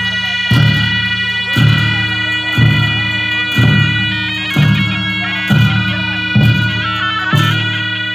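Tibetan Buddhist ritual music: gyaling, the double-reed shawms, play a sustained melody that shifts pitch a few times, over a steady low beat about once a second.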